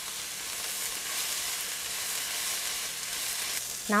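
Shredded cabbage, carrot and celery sizzling steadily in hot oil in a wok as they are stir-fried.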